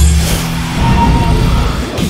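Cartoon sound effects of missiles flying past, a rushing whoosh over a deep rumble, with background music underneath.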